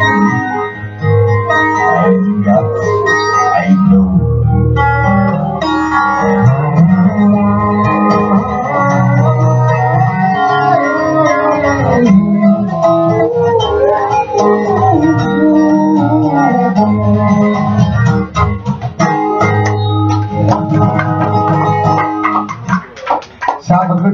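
Live music from a singer-guitarist: acoustic guitar with an organ-like keyboard backing and a male voice singing, thinning out near the end.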